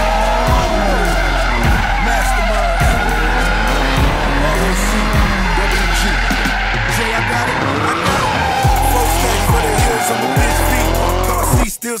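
Turbocharged Nissan S13 drift car's engine revving up and down again and again as it slides, with its tyres squealing, over background music with a steady bass. Near the end the car sound cuts off.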